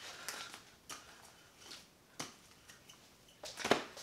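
Faint handling noise from padded MMA gloves working a yo-yo and its string: scattered short clicks and rustles, a little louder near the end.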